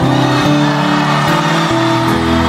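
Live rock band playing an instrumental passage of held, sustained chords, with no singing; the chord changes about half a second in and again near the end.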